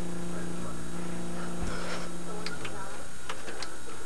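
Steady buzzing hum and hiss from a mistracked VHS tape playing through a television speaker. The hum cuts out about two and a half seconds in, and a few sharp clicks follow near the end.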